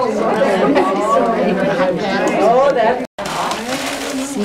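A group of women laughing and talking over one another. The sound drops out completely for a moment about three seconds in.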